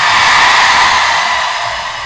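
A loud rush of steady, hiss-like noise that swells up at the start and then slowly fades, with no voice or beat in it.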